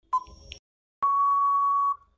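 Quiz countdown timer sound effect: one short beep, then about a second in, a long steady electronic beep lasting about a second that signals time is up.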